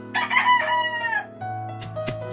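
A rooster crows once, a single loud call about a second long that falls in pitch at its end, over steady background music. A knife knocks once on a wooden chopping board near the end.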